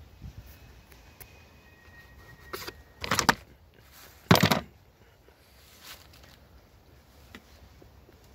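Plastic trim around a car's windscreen cowl being handled: two short, loud scraping rattles about three and four seconds in, with a few faint clicks around them.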